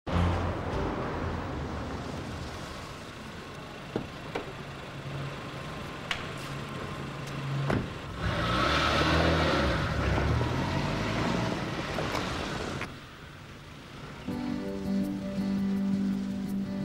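A car drives past on a wet street about halfway through, its tyre and engine noise swelling and fading, over a low steady background drone. Soft guitar music begins near the end.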